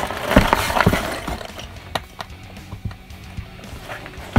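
Cardboard LEGO box being handled and pried open: rustling and tearing in the first second and a half, then a few sharp clicks around two seconds in, followed by quieter handling.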